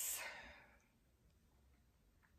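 A woman's breathy sigh, an exhale that fades out within the first second, then near silence.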